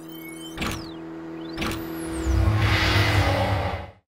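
Channel logo intro sting of designed sound effects: sweeping pitch glides and two sharp hits about a second apart over a steady hum. It swells into a deep rumble in the second half and cuts off suddenly just before the end.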